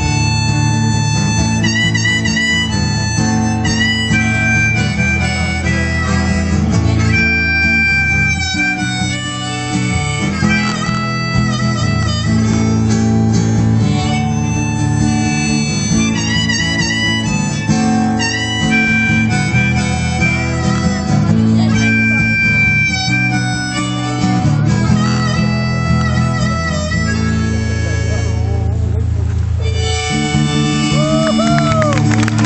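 Live band instrumental break: a harmonica plays a solo over strummed acoustic guitar and the band's bass.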